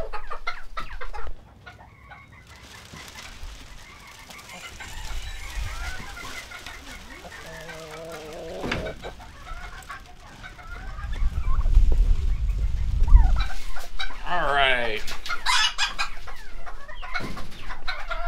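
Chickens clucking and calling, growing louder in the last few seconds with a rooster crowing. A low rumble swells about two-thirds of the way through.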